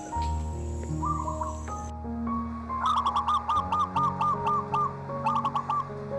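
Soft piano music with a bird calling over it. There are short chirps about a second in, a quick run of about eight repeated notes in the middle, and a shorter run of about four near the end.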